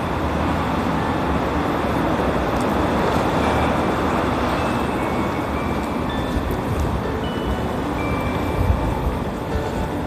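Road traffic noise: a steady hiss of passing cars that swells a little and eases off.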